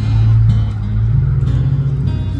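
Live acoustic band playing an instrumental passage: strummed acoustic guitar over sustained upright bass notes, with no singing.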